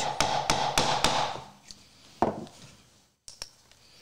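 A 17-degree bevel bench chisel being tapped down across the grain of a pine block: a quick run of light strikes, about four a second, for the first second, then one more single knock a little after two seconds in. The acute bevel is meant to slice the soft fibers instead of crushing them.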